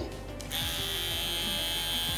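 An electric hair clipper is switched on about half a second in and runs with a steady buzz.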